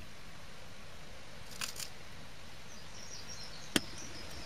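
Barium hydroxide octahydrate crystals poured through a plastic funnel into a small glass beaker: two brief rustles about halfway through over a steady low hiss, then a single sharp click near the end.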